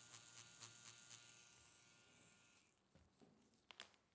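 Permanent-makeup pen machine buzzing faintly as its needle shades latex practice skin, with soft rhythmic strokes about four a second. The buzz fades and stops about two and a half seconds in, followed by a few faint clicks near the end.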